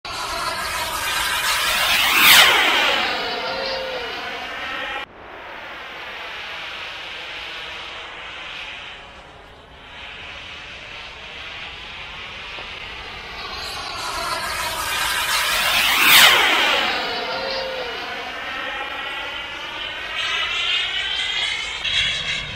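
Radio-controlled model jet making two fast low passes. Each pass is a loud whine that drops sharply in pitch as the jet goes by. The sound cuts off suddenly about five seconds in, and a steadier, fainter whine follows between the passes.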